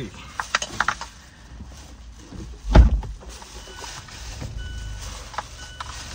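Thin plastic grocery bag crinkling and rustling as bottles and items are handled, with a few sharp crackles in the first second and one loud thump just under three seconds in.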